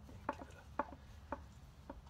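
Faint light clicks, about two a second, from a plastic threaded fitting being turned by hand on the pump's port, its threads wrapped in plumber's tape.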